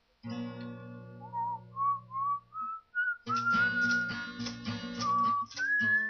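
Acoustic guitar strummed while a person whistles the melody over it. A chord rings first as the whistle climbs in short rising notes; about three seconds in, the strumming picks up again under a longer held whistled note that dips and then steps up near the end.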